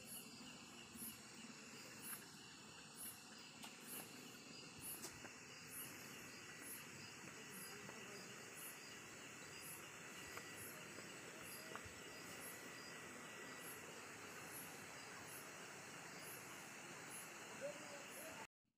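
Faint chirping of night insects, crickets, pulsing steadily about twice a second over a low background hiss.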